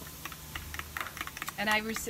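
Metal spoon clinking against a drinking glass while stirring a drink: a quick, irregular run of light clicks that stops about one and a half seconds in.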